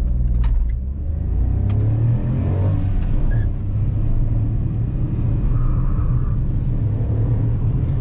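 Ford Ka's 1.0 litre three-cylinder petrol engine heard from inside the cabin, accelerating the car away from low speed with a steady low drone and a rising note in the first few seconds.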